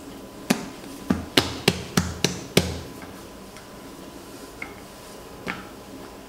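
A quick series of seven sharp knocks against a granite worktop over about two seconds, some with a dull thud, as dough and a rolling pin are handled, followed by a couple of faint ticks.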